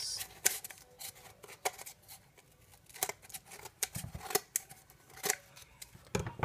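Scissors snipping through decorative paper to trim the excess off the end of a cardboard paper towel roll: a series of short, irregular snips.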